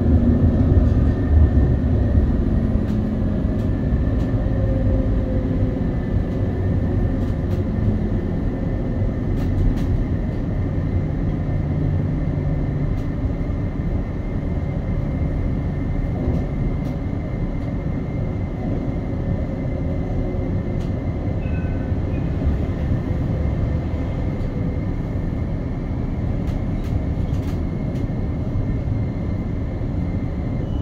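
Light rail tram running, heard from inside the car: a steady low rumble with a faint high whine and a few faint clicks.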